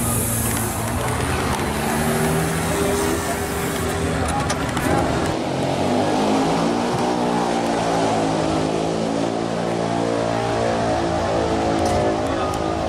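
A car engine running steadily, with voices and music mixed in from about five seconds in.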